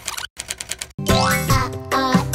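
A rapid run of keyboard-typing clicks, a sound effect for text being typed into a search box, after the music breaks off. About a second in, bouncy children's music comes back in with a rising boing-like slide.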